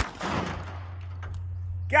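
A single .22 gunshot: one sharp crack right at the start, followed by an echo that trails off over about a second.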